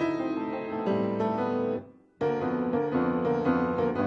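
Grand piano played solo, chords under a melody line. About halfway through the sound fades away for a moment, then comes straight back in.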